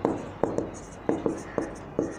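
Marker pen writing on a whiteboard: a quick run of taps and short strokes as the tip touches down and slides across the board, several sharp clicks a second with a light hiss from the strokes.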